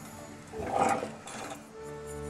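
Background music with steady held notes, with a brief louder noise about a second in.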